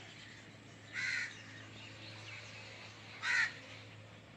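A bird outdoors giving two short calls about two seconds apart.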